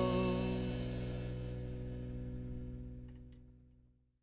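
The last chord of a rock band's guitar and bass ringing out after the song's final strike. It fades steadily and dies away near the end.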